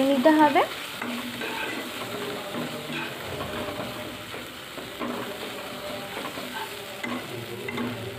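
Onion-and-spice masala sizzling in hot oil in a non-stick kadai while a spatula stirs and scrapes it across the pan, the spices being fried down. A voice is heard briefly at the very start.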